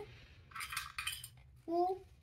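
Small plastic toy pieces clicking and clattering against each other and a wooden tray as a hand rummages among them, a run of quick clicks lasting under a second about half a second in.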